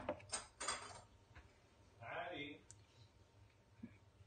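A few quick clinks and knocks of a measuring cup and spoon against a plastic mixing bowl in the first second, as melted chocolate is poured and scraped out, with one small knock near the end. A short murmur of voice about two seconds in.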